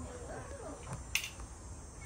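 A single sharp click about a second in, over faint voices and a steady low rumble.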